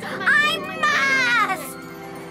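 A high-pitched cartoon voice cries out in a long wavering wail over background music, breaking off about a second and a half in.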